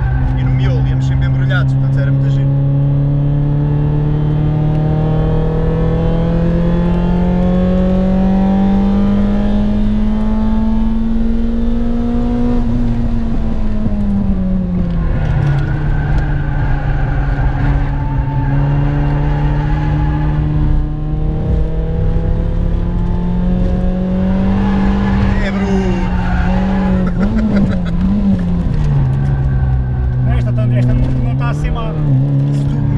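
Citroën Saxo Cup race car engine heard from inside the cabin, running hard under load. Its pitch climbs steadily for about twelve seconds, falls away over the next couple of seconds as the driver shifts or lifts for a corner, then holds steady and dips again near the end.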